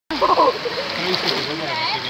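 Swimming-pool water splashing and lapping close to the microphone at the water's surface, with people's voices and calls mixed in, loudest in the first half second.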